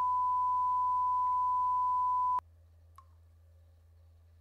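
A long, steady electronic beep on one pure high tone that cuts off abruptly about two and a half seconds in. After it only a faint low hum remains, with a soft tick near the end.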